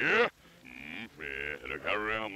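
Bluto's cartoon voice played backwards: a short loud vocal burst at the start, then quieter drawn-out vocal sounds.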